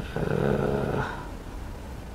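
A man's low, drawn-out vocal hum held for just under a second, a wordless hesitation sound.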